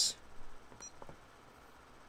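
A few faint button clicks from the keypad of a RigExpert AA-170 antenna analyzer, with one very short high beep a little under a second in. Between them it is nearly quiet.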